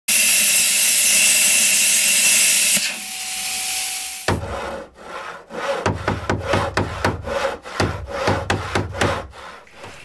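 Plasma cutter cutting through a steel scuba tank: a loud steady hiss for nearly three seconds, then a quieter hiss. After about four seconds comes a steady rhythm of scraping strokes, about three a second, ending shortly before the end.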